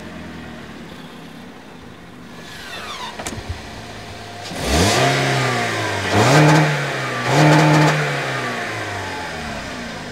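Toyota Corolla's four-cylinder engine started up, flaring about five seconds in, then revved twice in quick succession before settling back toward idle. A short falling whistle and a click come just before the start.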